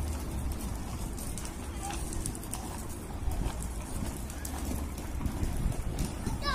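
Outdoor ambience: a steady low rumble with faint distant voices and a few faint short chirps.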